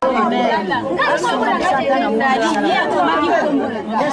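Several people talking over one another in overlapping, unintelligible chatter.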